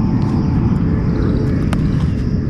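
Steady low outdoor rumble with a single sharp click a little before the end.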